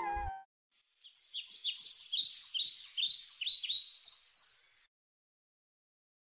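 A bird chirping: a quick run of short, high, falling notes, about three a second, lasting some four seconds and stopping abruptly.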